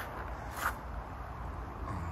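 A low steady outdoor rumble with one short crunch of a footstep on gravel about half a second in.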